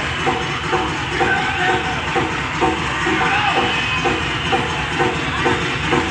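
Live rock drums on a double-bass-drum kit: a fast, rolling double-kick pattern under a beat that repeats a little over twice a second, with no vocals.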